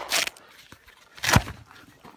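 The dying tail of a 9mm pistol shot fired just before, then a single sharp knock a little over a second in.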